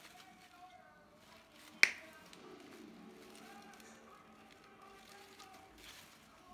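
Wire clippers snipping once through the wire stem of an artificial tulip, a single sharp snap about two seconds in.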